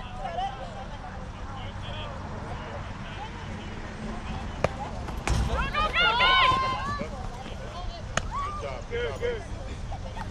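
Background voices of a crowd of spectators talking, with a burst of loud, high-pitched shouting about five to seven seconds in. Two sharp knocks cut through, one just before the shouting and one about eight seconds in.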